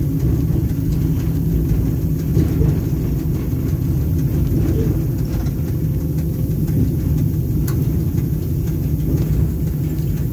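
Steady low rumble of a moving electric train heard from inside the driver's cab, with one sharp click near the end.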